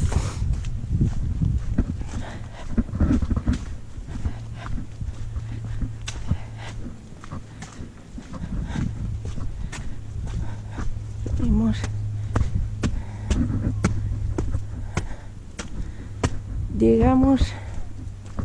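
Wind buffeting the microphone with a low rumble, over scattered footsteps on stone paving and stone steps.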